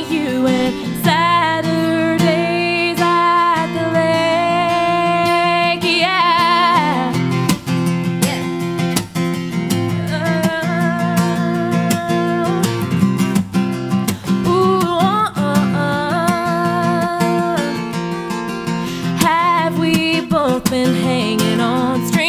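Acoustic guitar strummed under a woman singing a melody with long, wavering held notes.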